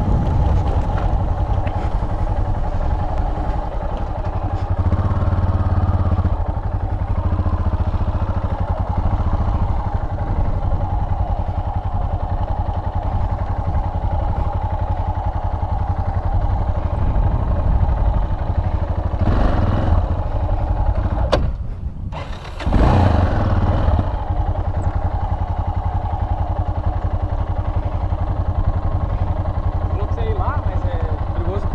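Yamaha XT660's single-cylinder four-stroke engine running steadily at low revs as the motorcycle is ridden slowly; the engine sound dips sharply for about a second around two-thirds of the way through, then picks up again.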